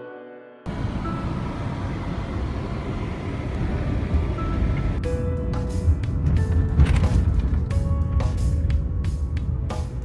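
A steady low rumble like a moving car's road and wind noise, cutting in suddenly just after the start. Background music of plucked notes comes back in over it about halfway through.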